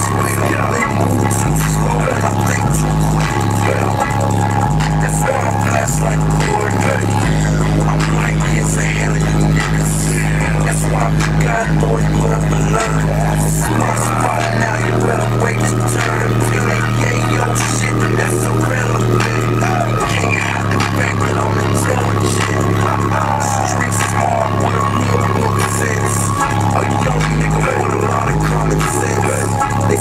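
Bass-heavy electronic music played very loud through a car audio system with an FI Audio BTL 15-inch subwoofer. Its deep bass notes step between pitches and are held for several seconds at a time.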